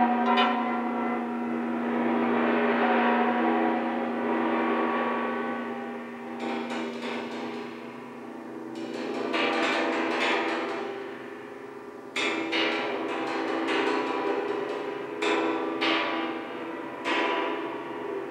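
Sustained ringing metallic tones, gong-like, swelling and fading in slow waves. From about six seconds in, a run of sharp clicks and clatters sounds over the ringing.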